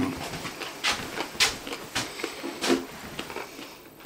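Someone chewing a mouthful of filled oatcake, with several wet mouth clicks and lip smacks and a short hummed 'mm' past the middle.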